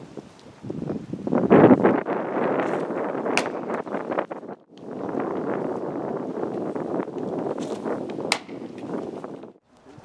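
Wind buffeting the camera microphone outdoors: an uneven, gusty rumble, loudest about a second and a half in, dropping out briefly near the middle and again near the end, with a couple of sharp clicks.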